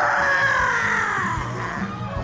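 Live calypso band with piano and congas playing under a long high-pitched yell. The yell rises sharply, then slowly falls away for nearly two seconds.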